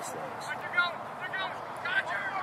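Voices shouting short calls several times over steady outdoor background noise, the loudest just under a second in.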